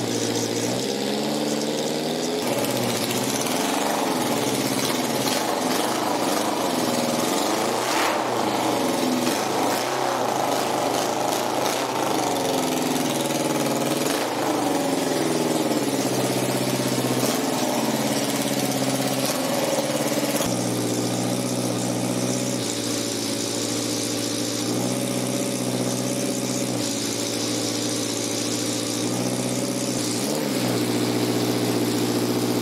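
Suzuki GSX400F four-cylinder motorcycle engine in a race mower, running with its speed rising and falling repeatedly as the throttle is worked. For the last third it settles to a steadier speed with small step changes.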